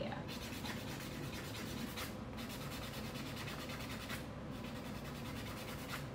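Nail buffer block rubbing over a dip-powder nail in quick back-and-forth strokes: a quiet, steady rubbing as the set dip coat is buffed smooth.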